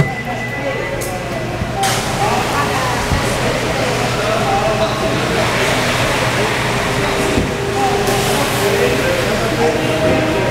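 Crowd of people talking over one another, a steady chatter with music playing underneath.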